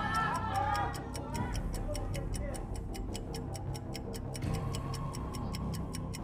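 Quiz-show countdown clock sound effect: fast, evenly spaced ticks, about four a second, over a low music bed, signalling that the time to answer is running out.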